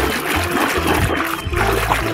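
Water sloshing and splashing as a hand scrubs a mud-covered toy in a basin of soapy water, over background music with a low bass.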